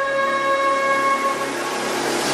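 A single long, held wind-instrument note with a breathy hiss behind it, fading away about a second and a half in.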